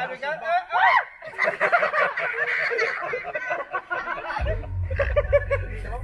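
Several people chattering and laughing at once, in overlapping voices that are too mixed to make out. A low, steady rumble sets in under the voices about four and a half seconds in.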